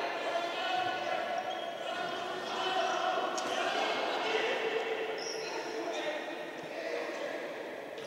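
Echoing futsal hall during a stoppage in play: several voices of players and people in the hall calling out at a distance, with a few knocks of a ball on the court.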